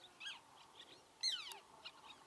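Little tern calls: a faint short call, then a louder harsh call just after a second in that slides steeply down in pitch.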